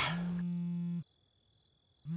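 Telephone ringing tone: one steady, buzzy tone lasting about a second, then a second's gap before the next ring, over crickets chirping in the background.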